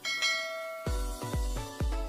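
A bell-like chime sound effect rings out at the start and fades, marking the click on the notification bell. About a second in, electronic music with a heavy bass beat comes in, about two beats a second.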